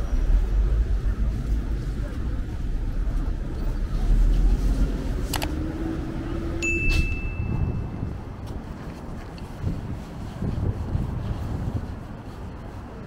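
City street traffic passing with a steady low rumble. About seven seconds in there is a short click followed by a brief high ding.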